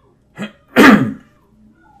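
A man sneezes once: a short catch about half a second in, then a loud burst falling in pitch about a second in.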